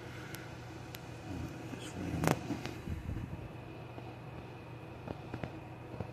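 A steady low machine hum, with a few sharp clicks and one louder knock a little over two seconds in.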